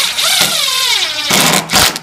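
Cordless driver running a screw into a door hinge, its motor whine falling in pitch. It gives a second short burst about a second and a half in, then stops.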